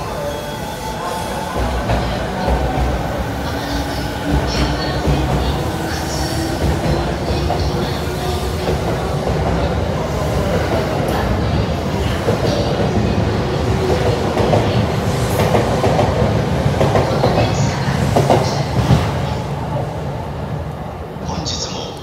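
E217 series electric train pulling out and accelerating past at close range: the traction motors' whine rises steadily in pitch over the wheels' clatter on the rails. The sound drops away over the last couple of seconds as the end of the train passes.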